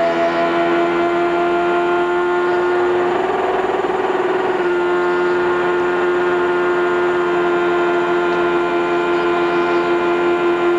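Chevrolet 3.5-litre V8 of an IRL Indy car at full throttle, heard from the onboard camera, holding a high, nearly steady pitch that wavers briefly about three seconds in. The engine is running on its 10,700 rpm rev limiter, which the commentators take as a sign the car may be stuck below sixth gear and short of top speed.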